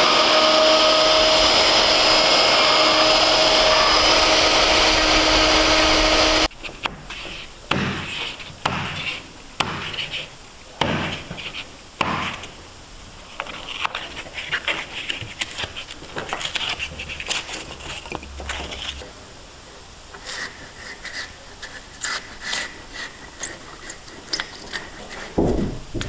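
Festool 2200 plunge router running loud and steady as it cuts a groove through the polyurethane foam core of a fiberglass door, cutting off abruptly about six seconds in. After that, irregular rubbing and scraping as strips of foam are worked loose and pulled out of the groove by hand.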